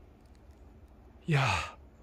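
A man's breathy exclamation of wonder, "iya!", falling in pitch, about a second and a half in. He is winded from the climb.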